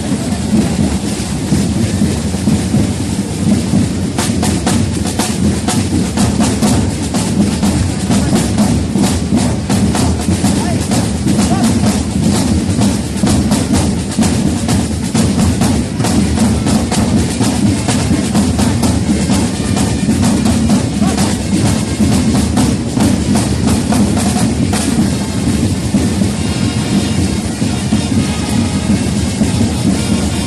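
A corps of marching snare drums playing a continuous, dense drum beat.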